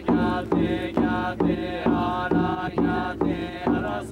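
Jodo Shu Buddhist memorial chanting: voices on sustained pitches in a steady rhythm of about two beats a second, each beat starting with a sharp knock.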